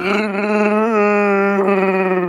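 A person's Chewbacca impression: one long held vocal howl, steady in pitch with a small waver about a second in.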